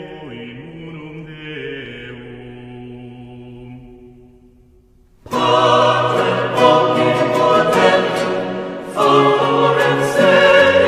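Choral music: a choir holds soft sustained chords that fade away about four seconds in, then after a brief pause a louder choral passage comes in, swelling again near the end.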